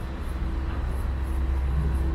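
Steady low rumble of city street traffic, with a faint steady hum coming in about a third of a second in.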